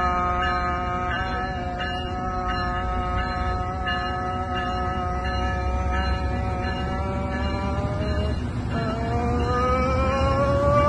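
Tri-Rail commuter train moving along the platform, giving a steady whine made of several tones together over a low rumble. The pitch sags slowly, breaks off briefly near the end, then rises as the train gathers speed.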